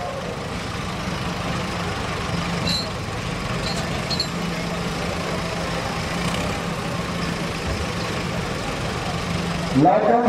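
Diesel tractor engines running steadily: an even low hum under a general haze of noise, with no change in pace.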